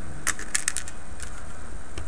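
A cluster of light clicks and taps in the first second, then a few fainter ones, from small plastic tank track links being handled and pressed into place, over a steady low hum.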